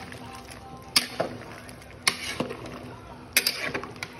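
A metal ladle stirring mutton in broth in a metal cooking pot. It knocks sharply against the pot about once a second, with the liquid sloshing between the knocks.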